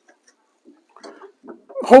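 A pause in a man's speech: near silence, then a few faint short sounds, and his speech starts again near the end.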